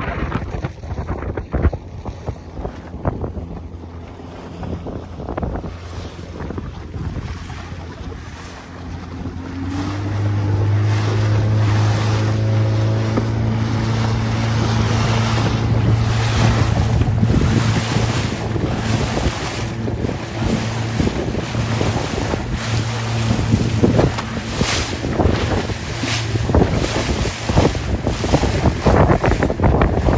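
A small motorboat's engine speeds up about ten seconds in, its pitch rising, and then runs steadily at speed. Wind buffets the microphone throughout, and water splashes and slaps against the hull.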